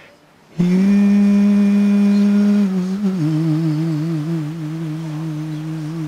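A man's voice singing or humming without words: after a brief pause, one long held note, then a step down to a lower note held with a steady vibrato.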